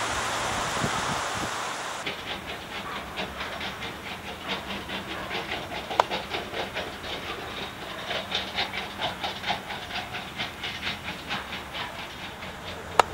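Heavy earthmoving machinery running: a steady low engine hum under a rapid, even clatter of about four knocks a second, with one sharp click about six seconds in.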